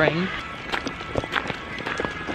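Footsteps on a gravel trail: a handful of uneven steps.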